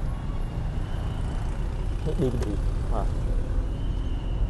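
Steady low rumble of running motor vehicles, with a brief faint voice about two seconds in.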